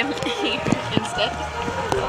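Indistinct voices of people talking nearby, with no words clear enough to make out.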